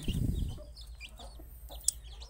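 Newly hatched chicks peeping in short, high chirps. A low rumble is heard in the first half second, and a sharp click comes near the end.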